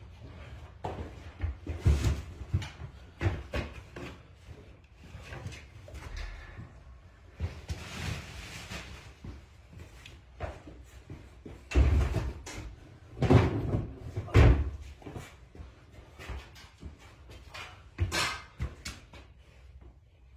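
Irregular thumps, knocks and scrapes of a person clambering in under a garage door and moving about among furniture, with the loudest thumps coming in a cluster about twelve to fifteen seconds in.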